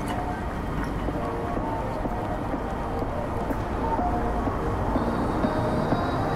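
Low, steady city traffic rumble with instrumental background music playing over it.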